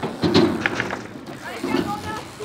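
Boys' voices calling out, loudest just after the start and again near the end.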